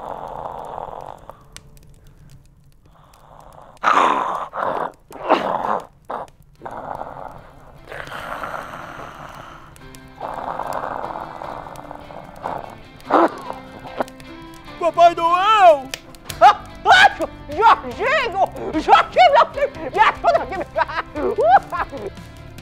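Background music under a character's wordless vocal noises: breathy sounds and short voice bursts in the first half, then a run of wavering, swooping voice sounds from about the middle on.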